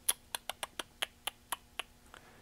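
A string of about nine light, sharp taps, spaced unevenly over two seconds: a pencil's eraser end tapping on the touchscreen and case of a tinySA handheld spectrum analyser.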